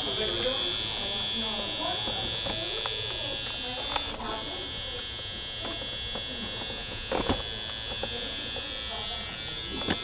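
Electric tattoo machine buzzing steadily, with a very brief break a little over four seconds in.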